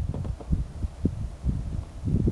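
Wind buffeting the microphone, heard as irregular low thumps and rumble.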